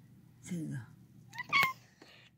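Domestic cat giving a short, high meow about one and a half seconds in, as it watches birds through a window.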